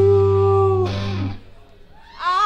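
Live band holding one long sustained note over a low bass note, then cutting off together as a stop in the song: the top note ends just under a second in and the bass a moment later, leaving a brief lull.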